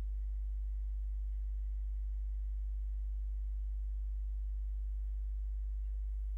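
A steady low electrical hum, mains hum on the sound system, with nothing else heard over it.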